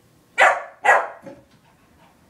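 Puppy barking twice in quick succession, about half a second apart, with a fainter third bark just after: play barks aimed at the kitten.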